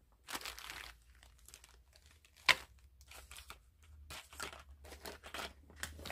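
Packaging being handled, crinkling and rustling in a run of short scrapes, with one sharp click about two and a half seconds in.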